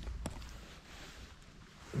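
Faint low rumble of wind and handling on a handheld action camera's microphone, with two small clicks about a quarter second apart at the start, fading away.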